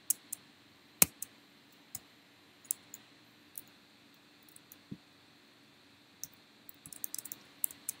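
Typing on a computer keyboard: irregular key clicks in short runs with pauses, one louder click about a second in, and a quicker run of keystrokes near the end.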